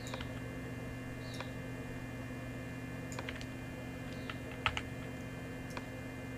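A handful of sparse, separate clicks from a computer keyboard and mouse as shortcut keys are pressed and objects dragged, over a steady low electrical hum.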